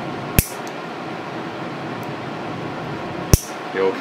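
Two sharp snips of stainless nail nippers cutting through a thick, overgrown big toenail, about three seconds apart, over a faint steady room hum.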